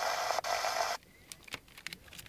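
Portable analog TV receiver's speaker hissing static, white noise, while tuned to a channel with no usable signal. The hiss stops abruptly about a second in, followed by a few scattered faint clicks.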